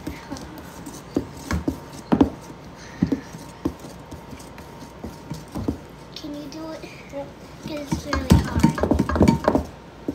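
Wooden spoon stirring thick chocolate cake batter in a stainless steel mixing bowl, the spoon knocking and scraping against the bowl at irregular intervals. The knocks come faster and closer together near the end.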